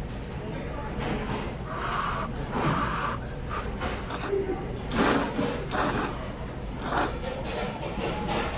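Udon noodles being slurped: several short, hissing drags of air, the loudest in quick succession about five to seven seconds in.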